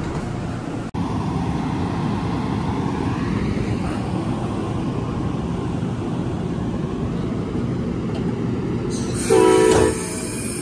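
Steady rumble of an Amtrak passenger train standing at a station platform. Near the end comes one short, loud blast of a train horn, sounding as a chord of several tones.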